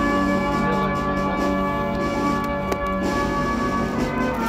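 Brass band music with long held notes, and one sharp click near the middle.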